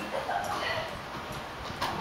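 A tennis ball struck by a racket, a single sharp pock near the end, during a doubles rally. Before it, about half a second in, comes a short high wavering call.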